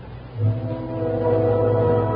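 A phonograph record starting to play: slow, sustained band chords come in about half a second in and hold, with a strong low note underneath.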